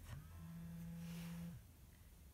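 A woman's voice humming one steady, level note for about a second and a half, then stopping.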